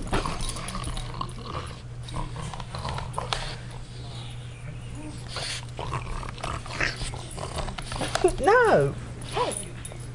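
Boston terrier fretting at a steam iron: faint scuffling and snuffling with low grumbles. About eight seconds in comes a louder whine that rises and then falls, and a short one follows.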